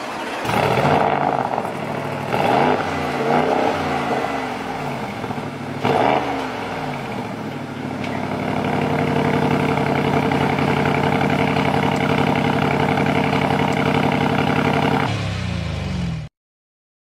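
Bentley Continental GT exhaust: the engine is blipped up and down several times in quick revs, with a sharp crack about six seconds in, then held at steady high revs for about seven seconds before the revs fall away near the end.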